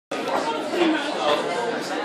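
Chatter of many people talking at once in a lecture room, no single voice standing out.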